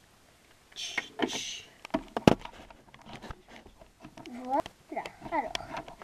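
Plastic toy figures and salon pieces being handled, with several clicks and one sharp knock about two seconds in. Two short hisses come about a second in, and a child's voice makes sliding, wordless sounds near the end.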